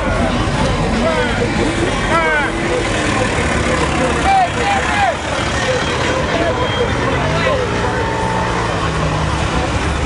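Car and truck engines running in slow-moving traffic, a steady low rumble, with people talking and calling out over it.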